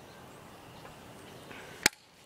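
A single sharp click near the end, over faint outdoor background noise.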